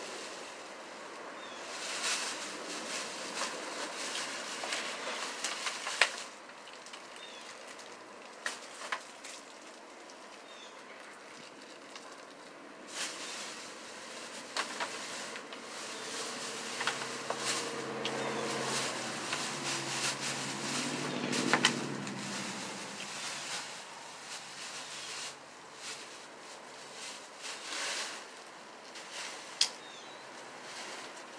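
A plastic shopping bag rustling, with scattered sharp clicks and knocks as things are handled. In the middle a motor vehicle drives past, its engine note swelling and then falling in pitch as it goes by.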